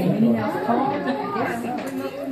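Chatter of several voices talking over one another.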